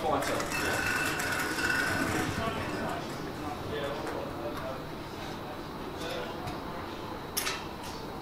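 Balls clinking in a draw bowl as a hand rummages through them, under a low murmur of voices in the hall, with one sharper clink near the end.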